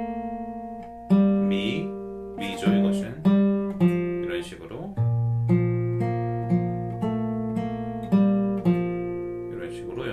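Bedell acoustic guitar with a capo, fingerpicked: a phrase of single plucked notes and chords that ring and decay one after another, over a low bass note held from about halfway through.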